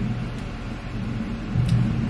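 Steady low rumble of an idling school bus, heard from inside its cabin.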